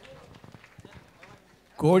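A pause in amplified speech: faint room noise with a few light clicks, then a man's voice over the microphone starts near the end.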